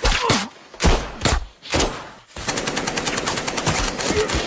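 Gunfire in a film firefight: a few loud single shots in the first two seconds, then a long, rapid burst of automatic fire.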